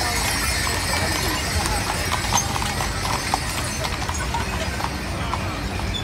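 Draft horses' hooves clip-clopping on the paved street as a team pulls a wagon past, over the chatter of a crowd.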